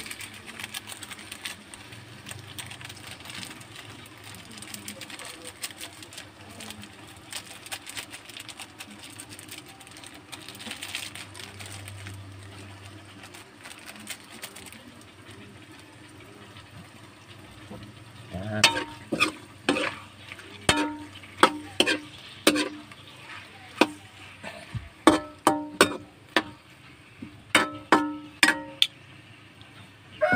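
Faint sizzling of seafood cooking in a metal wok. From about 18 seconds in comes an irregular run of about fifteen sharp knocks of a utensil against the wok, each ringing briefly.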